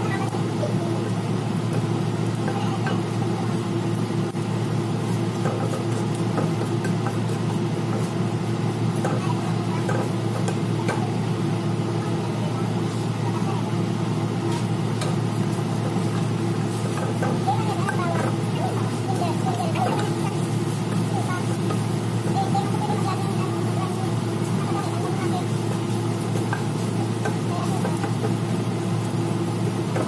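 Ginger strips frying in oil in a nonstick wok, stirred and pushed around with a wooden spatula, over a steady low mechanical hum.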